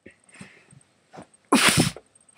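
A person's mouth making a short, loud, spluttering spitting sound about one and a half seconds in.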